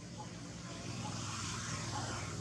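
A vehicle going by in the background, its rushing noise swelling in the second half.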